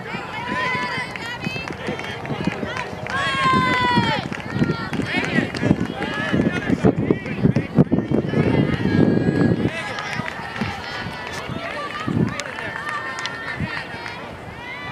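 Girls' high-pitched voices shouting and calling out across a softball field, over a background of crowd chatter.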